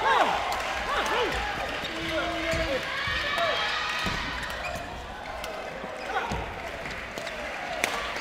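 Voices shouting and calling out in a sports hall between badminton rallies, loudest in the first few seconds, with scattered low thumps of footfalls on the court floor.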